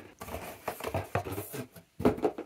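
A cardboard box scraping as a metal tripod microphone stand is slid out of it, with a run of small irregular knocks and rattles from the stand's tubes.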